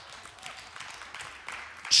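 Quiet background sound of a congregation in a hall: a soft even rustle with scattered faint clicks and faint voices behind it.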